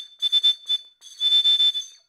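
A small bird-shaped whistle blown in a few short shrill toots and then one longer blast, all on the same high note. It is meant to imitate a bird call, but the pitch is not quite right.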